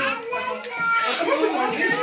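Several people talking over one another, children's voices among them.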